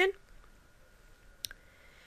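A single short, sharp click about one and a half seconds in, against near silence in a small room; the tail of a woman's speech is heard at the very start.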